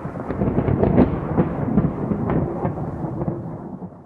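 Thunder sound effect: a long rolling rumble with sharp crackles, loudest about a second in and dying away near the end.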